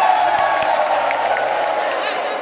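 A large crowd cheering, many voices shouting at once.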